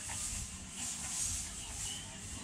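Outdoor yard ambience: a low rumble with a high hiss that swells and fades about once a second, and a few faint short chirps.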